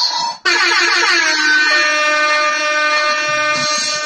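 A loud synthesized horn-like tone, a DJ sound effect, starts suddenly after a brief gap. Its pitch slides down over about the first second and then holds steady.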